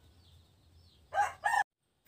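A rooster crowing: two loud pitched calls about a second in, cut off abruptly.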